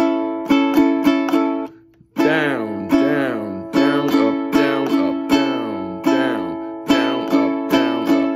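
Ukulele strummed in a repeating one, two, one-two-three-four pattern, each strum ringing out a chord, with a short break about two seconds in.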